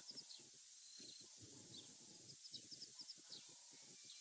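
Near silence: quiet bush ambience with faint, short, high bird chirps repeating every second or so.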